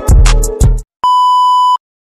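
Background hip-hop-style music with a heavy bass beat that cuts off abruptly, followed after a short gap by a single steady electronic beep, a pure tone lasting under a second, as of a censor bleep or transition sound effect.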